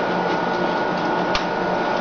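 Steady mechanical hum and hiss with a thin high whine running underneath, and one short click about one and a half seconds in.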